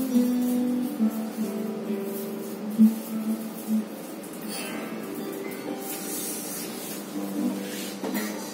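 Steel-string acoustic guitar played fingerstyle: a run of plucked single notes in the first half, then quieter notes left ringing and fading.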